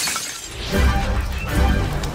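A shattering crash dies away in the first half second, right after the line "We haven't broken anything". Then trailer music comes in with a heavy, pulsing bass beat.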